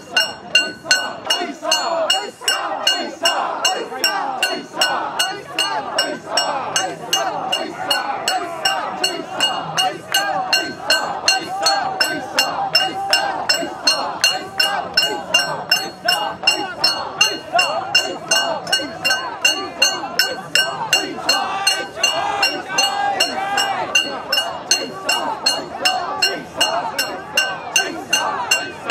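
A crowd of mikoshi bearers chanting in rhythm as they carry and bounce the portable shrine, with metal fittings clinking and ringing in time, about two beats a second.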